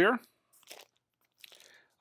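An LP record sleeve being handled, a faint rustle twice.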